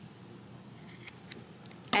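Scissors snipping off thread tails and underwire channeling tails at a sewn seam: a few short snips in the second half.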